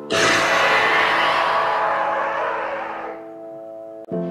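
A sudden loud rushing hit of trailer sound design that fades away over about three seconds, over a sustained music chord. A new chord enters right at the end.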